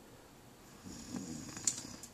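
A paper mailing envelope being torn open by hand: a rough ripping and rustling starting about halfway through, with one sharp snap near the end.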